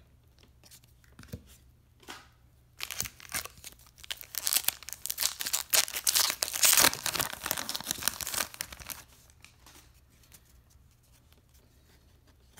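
Foil wrapper of a hockey card pack being torn open by hand: a run of ripping and crinkling that starts about three seconds in, lasts about six seconds, is loudest near its end, then stops.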